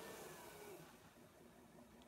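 Near silence: faint room tone through a phone microphone.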